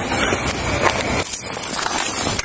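Rustling and movement noise on a police body camera's microphone as the wearer moves about, with a steady background hiss.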